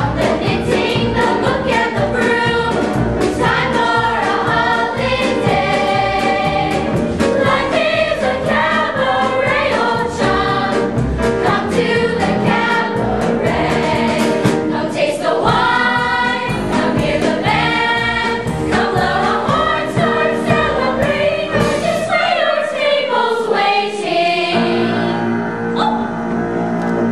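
A large ensemble chorus singing a musical-theatre number with instrumental accompaniment and a steady beat. Near the end the beat drops away and the music settles into a held chord.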